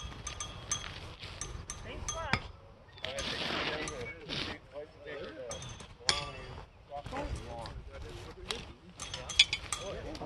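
Steel pitching horseshoes clinking sharply against each other, with a brief metallic ring after each; several clinks, the loudest near the end. Low voices talk underneath.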